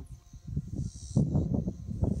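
Outdoor ambience: gusty wind rumbling on the microphone, louder in the second half, with a high insect buzz that comes and goes.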